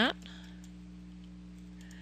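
A few faint computer mouse clicks over a steady low electrical hum.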